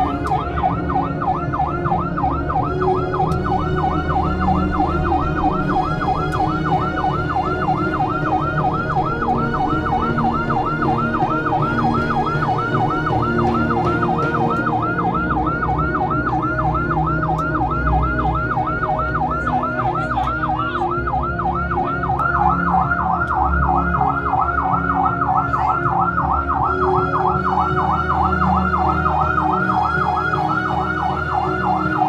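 A fast warbling siren-like tone, about four rises and falls a second at an even loudness, over low held notes that shift in steps.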